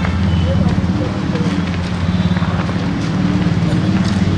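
An engine running steadily nearby, a low, even rumble with a fast flutter.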